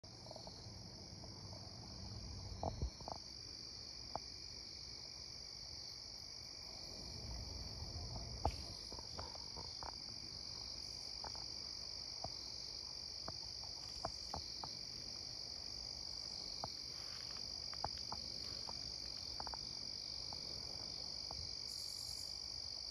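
Night chorus of insects such as crickets: one steady high-pitched trill that runs on unbroken. Scattered soft clicks and a few low knocks, loudest a little under 3 s and about 8 s in, sound over it.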